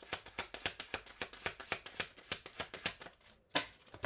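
Oracle or tarot card deck being shuffled by hand: a quick run of light card clicks, several a second, with one louder slap of cards about three and a half seconds in.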